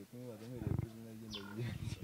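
A man's voice making drawn-out sounds, with a short, rough, gravelly laugh about half a second in and another near the end.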